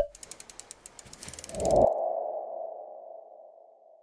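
Logo animation sound effects: a sharp click, a quick run of ticks, a swell, then a single ringing tone that slowly fades away.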